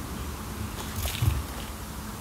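Faint crinkling of gold foil being peeled off a squishy ball, with a few soft crackles about a second in, over a low steady hum.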